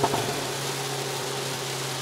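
Inside the cabin of a Hyundai Veloster N on the move, its 2.0-litre turbocharged four-cylinder engine drones at steady revs over a constant hiss of tyre, road and rain noise from the wet track.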